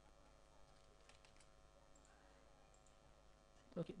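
Faint computer keyboard typing: a few scattered keystroke clicks over near silence. A man's voice begins near the end.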